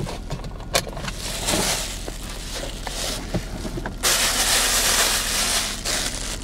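Clicks and handling rustle inside a car, with a loud, even rushing hiss over the last two seconds.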